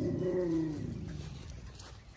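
A ram bleating once: a single call of about a second and a half that starts suddenly and falls slightly in pitch as it fades.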